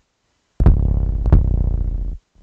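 An 808 bass sample played back in FL Studio with its root note set to A instead of C, so it sounds out of tune. After about half a second of silence it hits twice, about 0.7 s apart, as a deep booming bass note, and the second hit rings on past the end.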